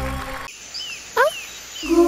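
Stage music cuts off half a second in, giving way to a commercial's forest soundscape: several short falling bird chirps and one quick rising swoop, the loudest sound.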